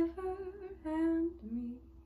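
A woman's voice humming the last few short phrases of a melody over the steady ring of a metal singing bowl; her voice stops near the end while the bowl keeps ringing.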